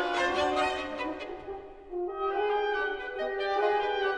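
Orchestra playing with French horns and strings together in sustained notes. The sound thins briefly about halfway through, then resumes.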